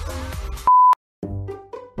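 A loud, steady pure-tone beep of about a quarter second, the test tone that goes with TV colour bars, cutting in sharply about two-thirds of a second in and stopping dead. Music plays before it and starts again after a short silence.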